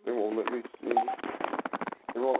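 A person talking over a telephone line, the voice thin and narrow as on a phone call.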